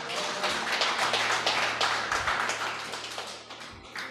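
Scattered audience clapping that dies away near the end, with faint background music underneath.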